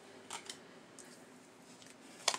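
Tarot cards being handled and set down on a glass tabletop: two soft clicks close together about a third of a second in, then a fainter one around a second in.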